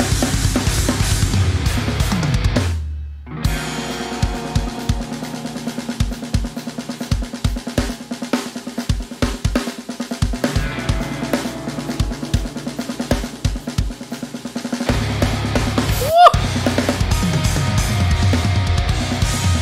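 A drum kit with Meinl cymbals is played along to a heavy metal track: bass drum, snare, cymbals and hi-hat. About 3 s in the music drops out for a moment. A sparser stretch of separate bass-drum hits over a held low note follows, and the full band comes back in about 15 s in. Just after 16 s a sharp rising pitch glide is the loudest moment.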